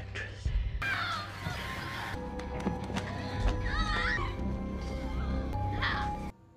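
Tense film score with held tones and a low rumble. Over it come several strained, wavering vocal cries, the choking sounds of someone being strangled, about a second in, around four seconds, and again near the end.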